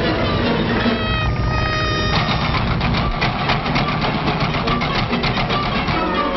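Old cartoon soundtrack of music and sound effects: a held chord for about a second, then from about two seconds in a fast, even clatter of about five strikes a second.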